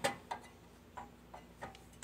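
A few faint, irregularly spaced clicks and taps from hands handling the top cover and parts of a lawn mower engine.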